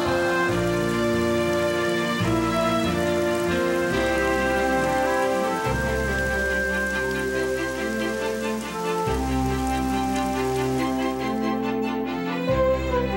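Steady sound of a rain shower under slow background music of long held chords.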